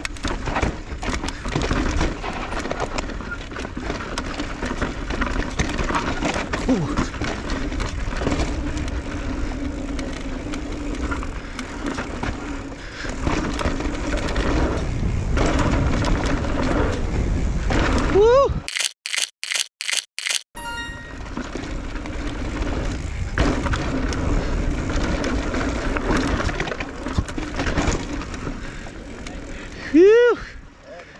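Electric mountain bike riding down a rocky dirt trail: tyres crunching over dirt and stones, the bike rattling, and wind on the camera. About two-thirds of the way through, the riding noise breaks off for a couple of seconds, replaced by a rising tone and a quick row of evenly spaced pulses.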